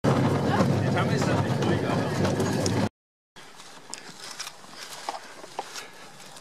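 Open horse-drawn tram car rolling along its rails: a loud, steady rumble mixed with wind noise that cuts off abruptly about three seconds in. What follows is much quieter, with scattered light clicks.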